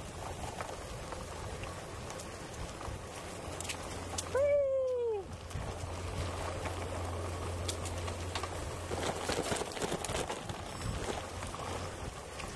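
Gravel bike riding along a dry dirt and gravel trail: a steady rush of tyre and wind noise. About four seconds in, one drawn-out note rises slightly and then falls over about a second.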